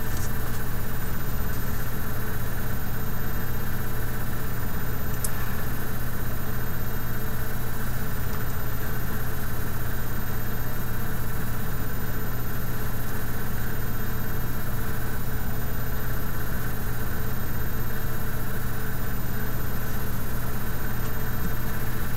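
A steady low hum with a faint hiss over it, unchanging throughout, and one faint tick about five seconds in.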